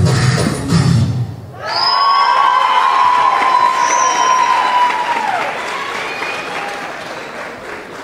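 Belly-dance music with a steady drum beat stops about a second and a half in. Then an audience applauds and cheers, with a long high-pitched call and a couple of short whistles over the clapping, fading toward the end.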